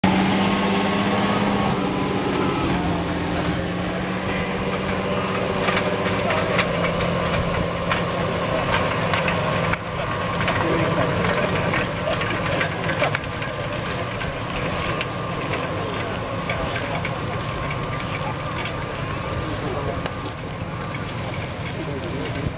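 Tractor engine working under load, pulling a heavy disc cultivator through stubble, with the rattle and scrape of the discs and tines in the soil. There is an abrupt change in the sound about ten seconds in.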